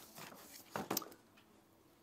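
A paper shopping bag rustling and crinkling as a hand rummages inside it: a few soft rustles, the sharpest just before a second in.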